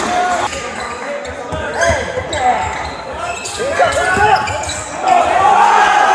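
Live basketball game sound on an indoor court: a ball dribbling, with players' shouts echoing in the gym. Crowd noise swells about five seconds in.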